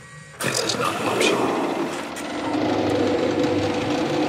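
Synthesized machine-like sound effect in a psychedelic trance intro. It starts abruptly about half a second in as a dense churning noise, and steady low synth tones come in under it after about two and a half seconds.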